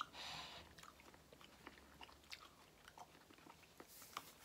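Faint chewing and small wet mouth clicks from people eating cut fruit, with a short breath at the start.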